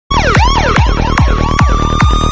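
Loud electronic siren sound effect: fast falling swoops repeat about two and a half times a second over a steady high tone.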